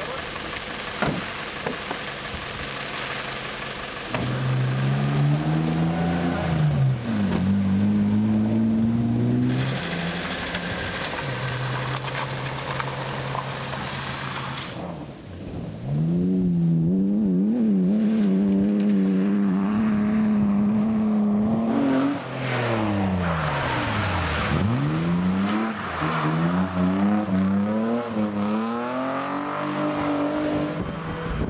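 Rally car engines at high revs on a special stage, several cars in turn: revs climbing through the gears, one held steady note, and a car passing with its pitch falling and then climbing again.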